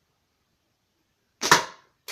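A slingshot with a woven pouch being shot: one sharp snap about one and a half seconds in, dying away quickly.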